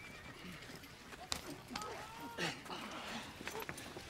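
Faint background of a horse whinnying and hooves clopping, with a few sharp knocks.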